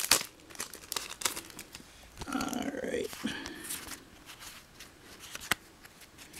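Foil trading-card booster pack wrappers crinkling and being torn open, with the cards inside handled. Scattered sharp crackles in the first second or so, a denser rustle around the middle, and one sharp click about five and a half seconds in.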